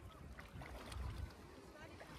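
Wind buffeting the microphone over gently moving shallow water, with faint voices in the background.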